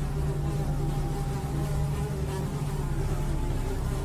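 A steady, low buzzing drone, like a swarm of flies, as a horror sound effect.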